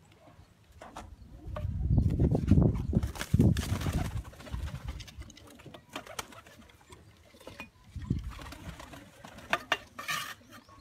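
Domestic high-flyer pigeons in a loft, cooing and flapping their wings, with the loudest, low flurry from about two to four seconds in. A few sharp clicks near the end.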